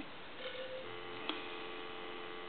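Telephone dial tone heard faintly from a handset receiver, starting a little under a second in and holding steady, with one light click partway through.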